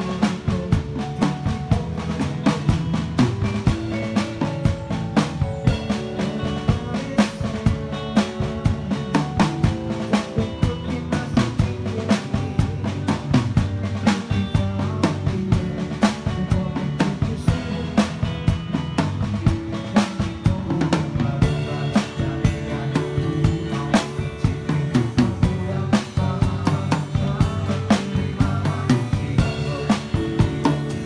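Acoustic drum kit played live in a steady groove, with snare, bass drum and cymbal hits throughout. A bass guitar line runs underneath.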